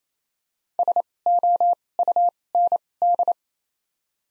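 Morse code sidetone at 28 wpm with 2x (Farnsworth) character spacing, sending the word "SOUND" as five groups of short and long beeps on one steady pitch: S, O, U, N, D.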